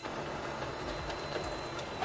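Brother HL-L2360D duplex laser printer running steadily as it prints and feeds out a two-sided page, with a low hum and a faint high whine.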